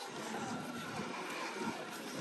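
Steady outdoor background noise, an even hiss with no single sound standing out.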